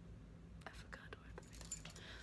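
Very quiet room: faint whispering with a few soft clicks and rustles over a low steady hum.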